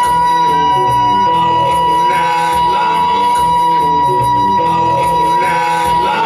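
Live looped electric blues: a repeating rhythm loop underneath while one high note is held at a steady pitch for about six seconds, fading out at the end.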